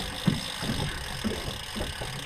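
A boat's outboard motor idling steadily under a haze of wind and water noise.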